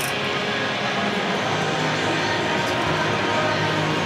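Steady background din with faint music running through it.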